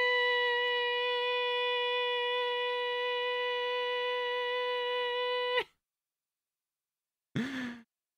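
A person's voice holding one long, steady sung note for about five and a half seconds, cut off abruptly; near the end, a short groan that falls in pitch.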